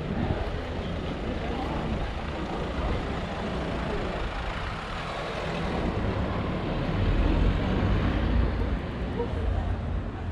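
Busy city street sound: a motor vehicle's engine rumbling amid traffic noise, louder about seven seconds in, with people's voices in the background.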